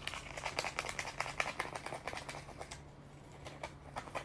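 A small parrot working at paper: a quick, dense run of dry crackling clicks and rustles for about three seconds, easing off, then starting again near the end.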